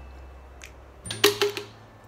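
A quick cluster of sharp plastic clicks about a second in, from a plastic water bottle's cap being handled and unscrewed.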